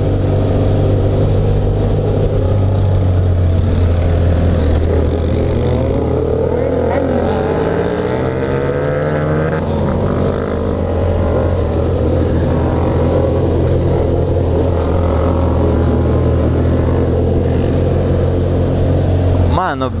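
BMW F800GS parallel-twin engine running through an open, silencer-less exhaust while riding along, with the engine note rising and falling as the throttle opens and closes for a few seconds in the middle.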